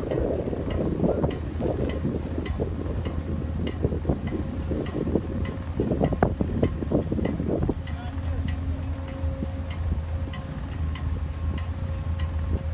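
Ice cracking and grinding against the hull of the bulk carrier Nordic Bothnia as it moves through, in irregular crunches that are heaviest for the first eight seconds or so. Under it runs a steady low rumble with wind on the microphone. A faint, regular ticking runs throughout.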